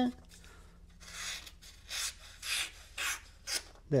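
A sharp, hollow-ground CPM S30V knife blade slicing through sheets of printer paper. It makes about five quick hissing strokes in the last three seconds, the clean push-cuts of a keen edge.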